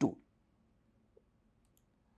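The end of a spoken word, then near silence with a few faint, short clicks near the end.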